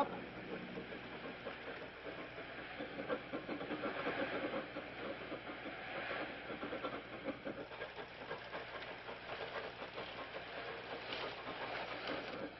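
A hand-worked deck windlass on a sailing fishing boat clattering irregularly as the crew haul in a line, over a steady hiss.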